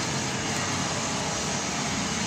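Steady rushing noise of road traffic on a city street, with no distinct events.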